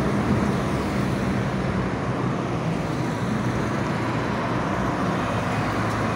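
Road traffic passing on a multi-lane city road: a steady wash of engine and tyre noise with a low engine hum underneath.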